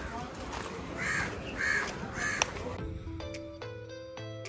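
A crow cawing three times in quick succession over outdoor street noise, followed near the end by background music with clear sustained notes.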